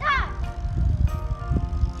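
Splash Out water-balloon game's timer playing an electronic tune in steady, held notes while the balloon is passed, with a child's short squeal right at the start. Wind buffets the microphone with a low rumble throughout.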